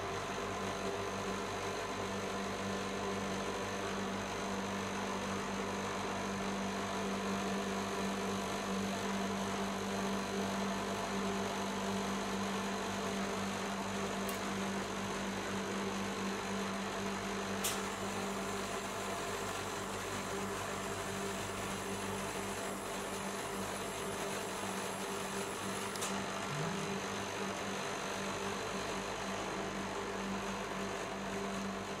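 Steady low hum of the refrigeration compressor under a rolled-ice-cream cold-plate machine, with three faint sharp clicks from small items being handled.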